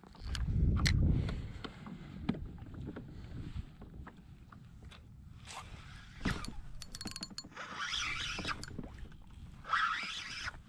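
Handling noise from a kayak angler jigging a spinning rod. There is a low rumble about a second in, scattered small clicks and knocks, and short whirring stretches about eight seconds in and again near the end.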